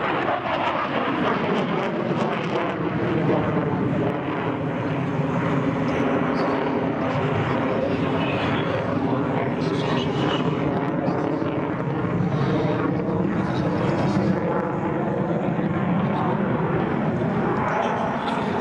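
Dassault Rafale's twin Snecma M88 jet engines, in afterburner, running loud and steady during display manoeuvres. The sound has a hollow, shifting tone that glides down near the start and sweeps down and back up again as the jet moves across the sky.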